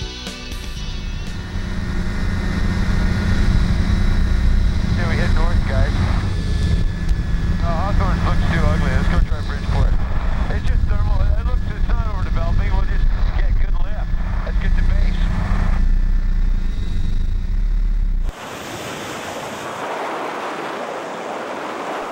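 Ultralight trike's engine and propeller drone in flight, heavy with wind on the microphone, with a muffled voice talking in several short stretches. About eighteen seconds in the drone cuts off suddenly, leaving a steady hiss.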